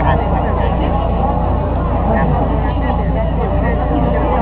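Many voices sounding together at once, with a steady low hum underneath.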